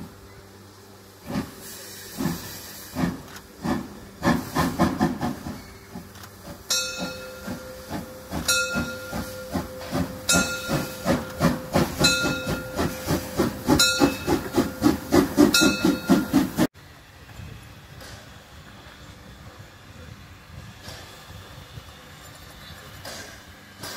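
Narrow-gauge steam tank locomotive of the Molli line working hard as it pulls away with its train, its exhaust chuffs coming quicker and louder over steam hiss. A steady tone joins about seven seconds in. The sound then cuts suddenly to a much quieter steady background beside a standing locomotive.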